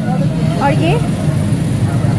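Brief speech over a steady low rumble of outdoor street-market background noise.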